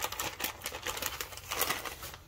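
Small plastic parts bag crinkling and rustling in the hand, a dense run of quick crackles and clicks.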